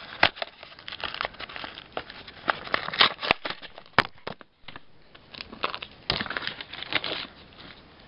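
Foil wrapper of a Pokémon TCG Power Keepers booster pack crinkling and rustling in the hands as it is handled for opening, with a couple of sharp clicks about three and four seconds in.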